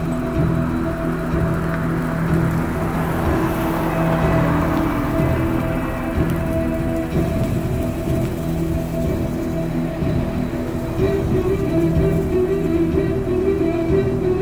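Holiday light-show music from a car radio turned up loud, heard thinly over a steady rush of wind noise on the microphone.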